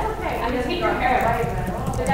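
Indistinct voices talking, with an uneven low knocking beneath them.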